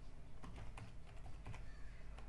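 Computer keyboard being typed on: a short run of quiet, irregular key clicks as a word is entered.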